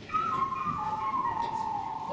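Whistling: a few held notes around one pitch that step and slide downward.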